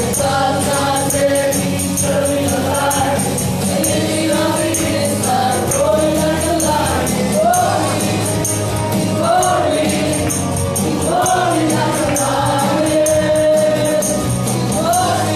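Live gospel worship singing: a woman leads into a microphone with a man's voice joining, over music with a steady, bright percussive beat.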